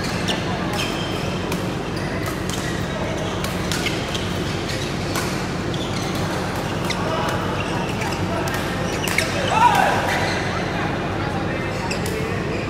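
Badminton rally: rackets striking the shuttlecock in sharp, repeated clicks, with players' footwork on the court floor, echoing in a large hall. A louder call or squeak with rising pitch comes about ten seconds in.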